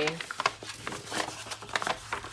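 Brown kraft paper bag being handled and smoothed flat, the paper crinkling and rustling in a quick, irregular run of small crackles.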